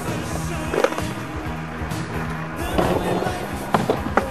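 Skateboard knocking and grinding on a concrete curb during slappy grinds, with sharp knocks about a second in and near the end and a scraping stretch in between, over background music.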